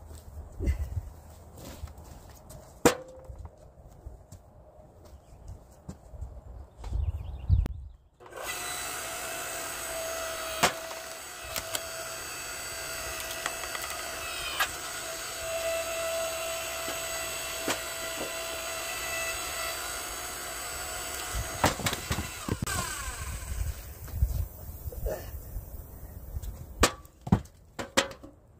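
A log splitter's motor starts about eight seconds in and runs steadily with a whining hum while it splits a log, then shuts off about 21 seconds in and winds down with a falling whine. Knocks of split wood and logs being handled come before and after the run.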